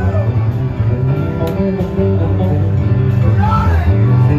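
Live band music led by an electric bass guitar with drums, and a woman's singing voice coming in near the end.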